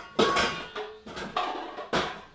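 Bowls knocking and clinking as they are handled at a kitchen cabinet: a sharp knock about a quarter second in that rings briefly, another about a second later, and a click near the end.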